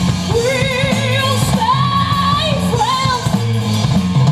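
Live rock band playing through a stage PA: a lead singer holds long, wavering sung notes over electric guitar, bass and drums.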